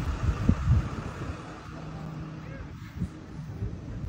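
Wind buffeting a phone microphone outdoors: an uneven low rumble with a few heavier gusts about half a second in. Faint voices sound in the background.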